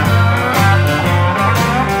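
Live band playing with guitar to the fore, over bass and drums keeping a steady beat.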